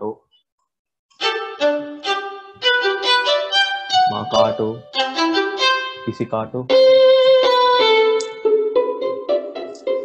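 Sampled solo violin from the Amadeus Symphonic Orchestra library in Kontakt, played from a MIDI keyboard: after about a second of silence, a run of short detached staccato notes, then longer held notes from about seven seconds in as different articulations are tried.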